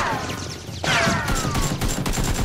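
Gunfire sound effects: rapid shots with two falling whistling whizzes like bullets flying past. The second whizz starts abruptly just under a second in.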